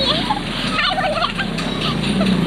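A girl laughing in short warbling bursts over steady busy-street traffic noise.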